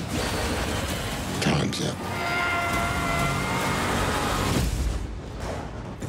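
Film trailer soundtrack: a deep, continuous rumble under music. One short spoken word comes about a second and a half in, and a held multi-pitched ringing tone sounds from about two seconds until about four and a half seconds.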